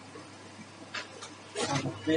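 Quiet room tone with a faint steady hum, a short hiss about a second in, then a person's voice starting near the end.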